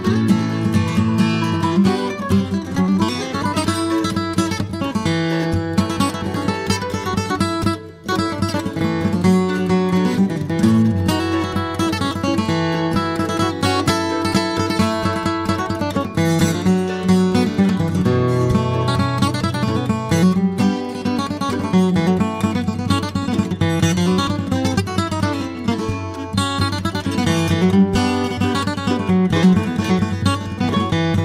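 Instrumental bluegrass tune played live on acoustic guitar and mandolin, with a brief stop about eight seconds in.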